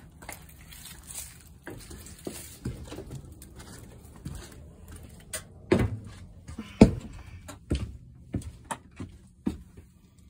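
Footsteps and scattered knocks on a camper trailer's floor and steps, with the two loudest thumps about six and seven seconds in.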